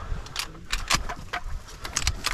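Handling noise in the blind: a run of sharp clicks and knocks, about half a dozen in two seconds, as gear and the camera are moved in a hurry.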